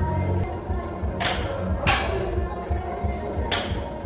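Loaded barbell clanking against the platform during sumo deadlift reps: three sharp metallic hits with a short ring, over background music.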